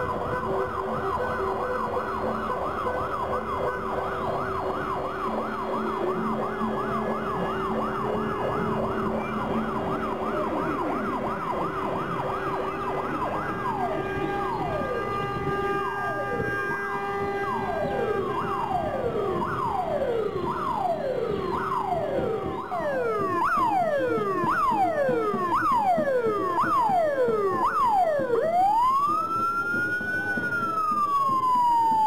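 Police vehicle's electronic siren cycling through its patterns: a fast warbling yelp, then a run of falling sweeps about once a second that quicken, then a long rising-and-falling wail near the end. A steady held tone sounds underneath for most of the first two-thirds.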